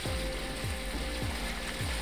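Torqeedo Cruise 2.0 electric outboard running at about a quarter power, just under 500 watts: a faint steady whine over the rush of the wake. A quick clicking pattern of about four clicks a second runs over it.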